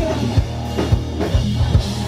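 Live rock band playing an instrumental stretch through a loud PA: drum kit with a steady kick-drum beat about twice a second, plus electric guitar.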